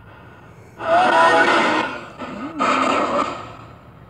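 Portal spirit box scanning radio bands: two bursts of hissing static, the first over a second long and the second shorter, with faint snatches of wavering tone in the hiss.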